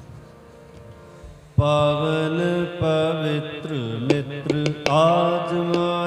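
Sikh kirtan: after a soft lull, harmoniums come in loudly about a second and a half in with sustained reed chords. A sung vocal line bends over them, and sharp tabla strokes land now and then.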